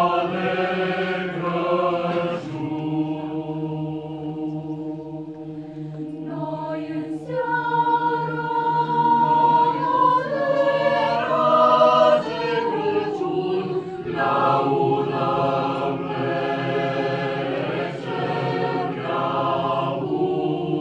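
Mixed choir singing a Romanian colindă (Christmas carol) a cappella, a low held bass note sounding under the melody. The singing swells and grows louder about a third of the way in, then eases back.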